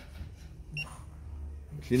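One short, high electronic beep from the Juki LK-1900BN operation panel as a key is pressed to step the bartack pattern number, over a low steady hum.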